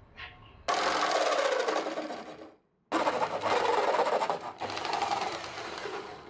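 Electric jigsaw cutting through a molded plastic TV cabinet panel, its blade running fast. It starts suddenly about a second in, stops briefly around the middle, then cuts again and eases off near the end.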